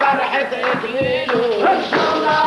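Men's voices of a Lebanese zajal chorus holding a drawn-out sung note that wavers and falls, over hand-beaten frame drums.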